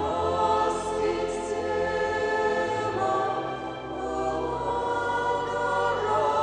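Church choir singing slowly in long held chords.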